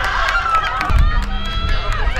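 Stadium crowd shouting, many voices over one another, as a shot goes past the goalkeeper, with sharp cracks scattered through.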